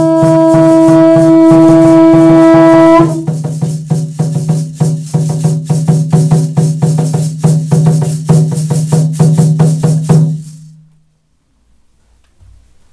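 A wind instrument holding one long note for about three seconds, then a rattle shaken in fast strokes over a steady low tone, all stopping suddenly about ten seconds in.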